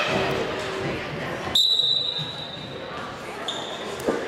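Referee's whistle blown to start a wrestling bout: one sharp blast about one and a half seconds in, then a shorter blast near the end, over the chatter of spectators echoing in a gym.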